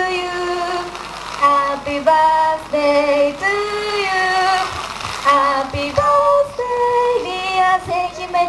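A high voice singing a melody with held notes, over light musical accompaniment.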